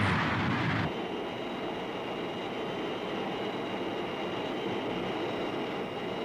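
Jet aircraft engines running, a loud even rush that drops suddenly about a second in to a quieter, steady rush with two thin, high, steady whines.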